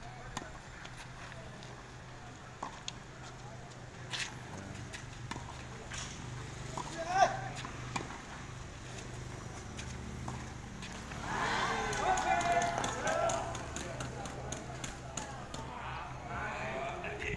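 Tennis balls struck by rackets during a rally: a few sharp pops spaced a second or more apart, the loudest just past the middle. People talking around the court, the chatter loudest a little past the middle.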